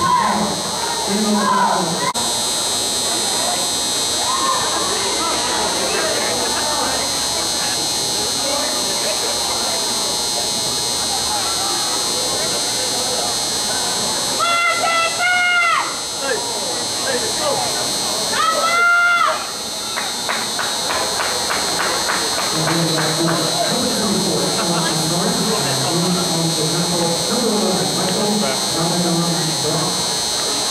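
Football spectators chattering over a steady high buzz. Two loud, drawn-out shouts ring out during a play, followed by a brief patter of clapping.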